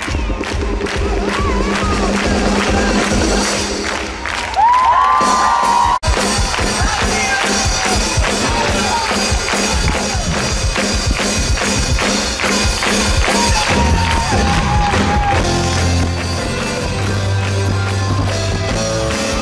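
Live pop-rock band playing with a steady beat while the crowd claps along in time and cheers. A low bass line comes in near the end.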